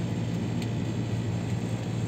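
Steady hum with an even hiss from the air conditioning of an enclosed observation-wheel gondola.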